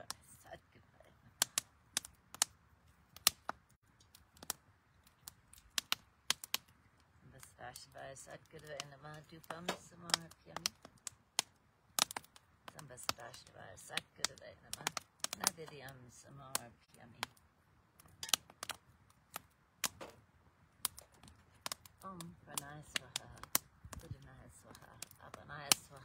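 Wood fire crackling in a havan fire pit as it catches: sharp, irregular pops and snaps, a few every second, with low voices murmuring at times.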